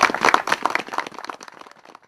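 Audience applauding, the clapping thinning out and dying away near the end.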